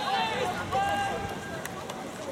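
Players' voices calling and shouting across a soccer pitch, distant and indistinct, several overlapping.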